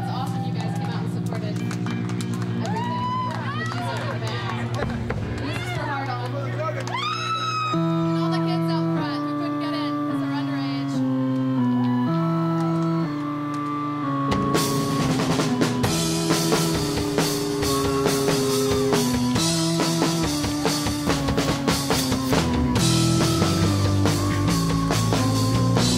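A live rock band opening a slow song: held organ chords, then a slow stepping melody of sustained notes from about 8 s. The drums and cymbals come in with the full band about halfway through.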